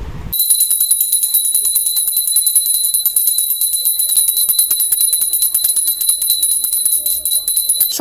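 A small brass hand bell (puja ghanti) rung rapidly and continuously, its clapper striking many times a second over a steady high ring. It starts suddenly just after the start and cuts off suddenly at the end.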